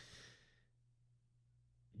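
A short, faint breath out from a man pausing at the microphone, then near silence with a faint steady low hum.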